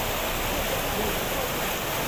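A fast mountain stream rushing over boulders in white water, a steady, even sound.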